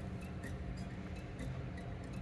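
Unamplified acoustic guitar played softly, with faint, light strokes about two or three a second over low notes that keep ringing.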